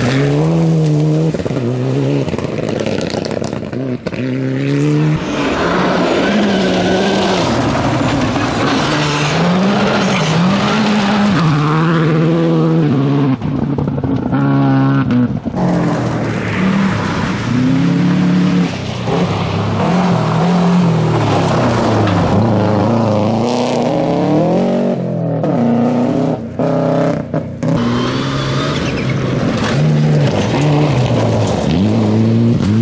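Rally cars with turbocharged four-cylinder engines driven flat out on a gravel stage, one after another. Each engine climbs in pitch and drops again through quick gear changes, over the noise of tyres on loose gravel.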